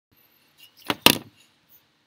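Two sharp knocks in quick succession about a second in, the second louder, with a short rattling tail; otherwise quiet.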